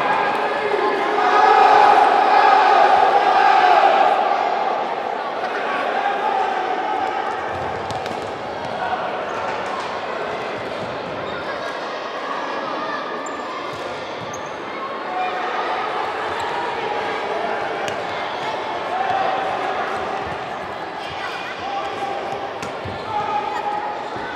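A futsal ball being kicked and bouncing on a sports-hall floor, with children and spectators shouting across the echoing hall. The shouting is loudest in the first few seconds.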